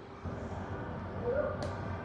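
Quiet handling of a plastic syrup bottle as coconut syrup is poured into a blender pitcher, with one sharp click near the end.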